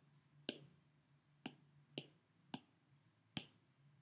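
Five faint, sharp clicks at uneven intervals: keystrokes typing a code on an iPad's on-screen keyboard.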